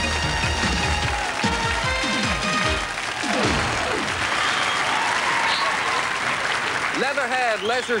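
Theme music plays and ends about three seconds in with a falling sweep. A studio audience then applauds, and a man starts speaking near the end.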